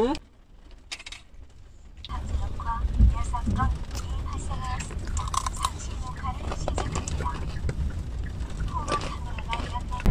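A foil-lined plastic snack bag rustling and crinkling over the low rumble of a moving car, with faint voices in the background. The first two seconds are quieter; the car rumble comes up about two seconds in.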